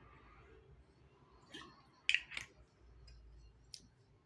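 A few short, sharp clicks and knocks in a quiet small room, the loudest a close pair about two seconds in: a glass bottle being lowered and set down after a drink.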